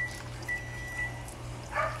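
A high, steady beep repeating about once a second, each beep lasting about half a second, over a steady low hum.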